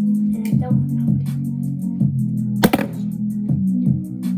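Pop music with a steady beat, a sustained bass line and quick regular ticking percussion. A sharp smack cuts through about two and a half seconds in.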